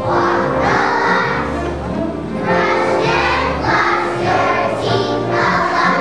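A kindergarten children's choir singing together with instrumental accompaniment.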